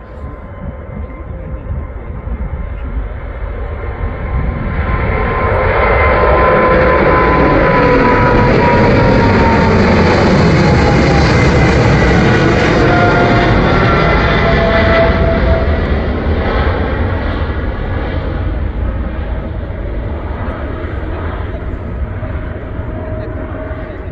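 Boeing 777-300ER's twin GE90 turbofans at take-off thrust as the jet climbs out and passes overhead. The noise swells over the first six seconds, holds for about ten, then fades as it moves away, with engine whine tones sliding down in pitch as it goes by.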